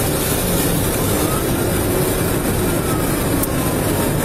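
Steady, loud rumble of road, wind and engine noise inside a Ford patrol vehicle driving fast on a highway.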